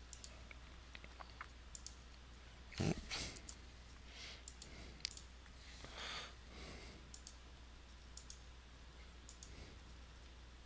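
Faint, scattered clicking from working the computer drawing software as lines are selected and deleted. There is one louder knock about three seconds in and a few soft rustles.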